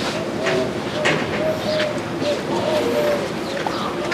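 Pigeons cooing: a run of short, low coos repeating over a steady background, with scattered soft clicks and rustles.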